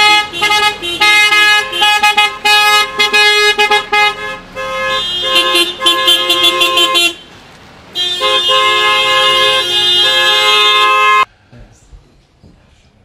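Several car horns honking from a convoy of departing vehicles: short toots at different pitches overlapping, then one long continuous blast of about three seconds that cuts off suddenly near the end.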